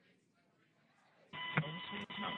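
Faint room tone, then about 1.3 s in a mission radio channel comes on suddenly. A steady beep tone plays over radio hiss with a sharp click, in the thin sound of a radio link.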